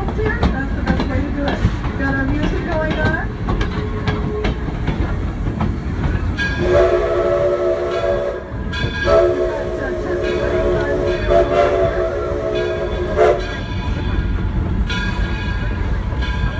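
Steam locomotive whistle blowing a short blast about six seconds in, then after a brief gap a longer blast of about four seconds, over the low rumble of the moving train.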